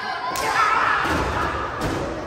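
A kick landing on a wrestler with a sharp smack about a third of a second in, followed by the crowd shouting in reaction. A second thud comes near the end as the wrestler falls flat onto the ring mat.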